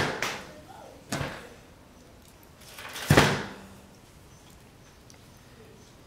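A thin wooden skewer being snapped by hand: a sharp crack at the start, another about a second in, and a louder, longer crack about three seconds in.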